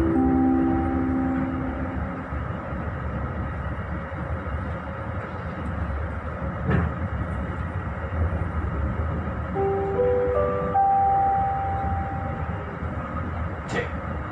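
Steady running rumble of a moving passenger train heard from inside the carriage, with a sharp click about halfway through and another near the end. A short melody of sustained notes fades out within the first couple of seconds and plays again in the second half.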